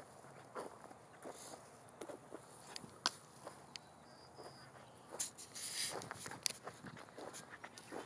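Footsteps of someone walking over dry grass and dirt clods, irregular steps and scuffs, with a sharper click about three seconds in and a louder scuffing stretch a little past halfway.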